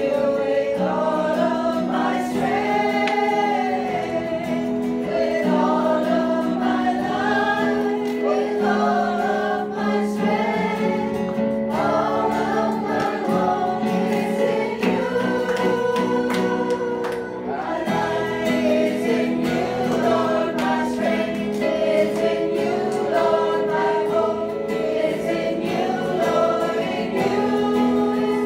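Live worship song: a woman and a man singing together over acoustic guitar and keyboard.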